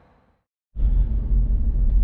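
A steady low rumble of road and engine noise inside a moving pickup truck's cab. It starts abruptly about three quarters of a second in, after a brief fade to silence.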